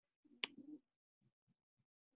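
Near silence with a single sharp click about half a second in, over a faint, brief low murmur.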